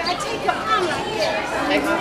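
People talking in conversation, with some chatter around them.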